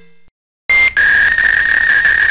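Electronic buzzer-like sound effect: a short high tone, a brief break, then a steady, slightly lower buzz held for about a second and a half that cuts off suddenly.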